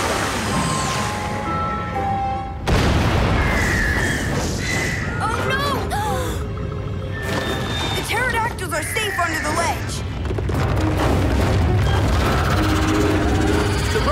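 Cartoon volcano eruption sound effect: a sudden loud boom about three seconds in, then a continuing low rumble, under dramatic background music. High squawking pterodactyl calls come twice in the middle.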